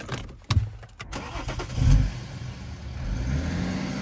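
Two clicks, then the BMW X5 xDrive30d's three-litre straight-six diesel fires with a loud low burst about two seconds in and settles to run. Near the end its note climbs as the engine is revved up to pull away.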